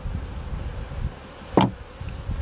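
Honeybees buzzing around an open hive, with a single short knock about one and a half seconds in.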